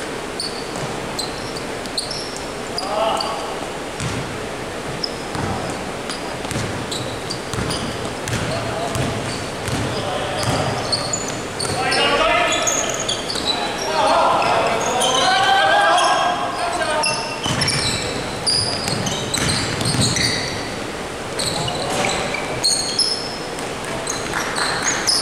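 Indoor basketball game on a wooden gym floor: the ball bouncing, short high sneaker squeaks and players calling out to each other, echoing in a large hall. The voices are loudest about halfway through.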